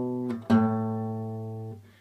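Steel-string acoustic guitar playing a walk-down bass line on the low E string into E minor. One note rings and stops, then another is struck about half a second in and left to ring, fading away near the end.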